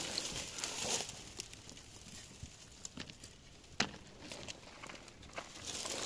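Faint crackle of dry leaves, pine needles and twigs underfoot, with a few short sharp clicks scattered through it, the loudest a little before four seconds in.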